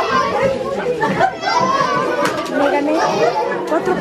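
Many overlapping voices of adults and children chattering at once, a steady crowd babble with no single voice standing out.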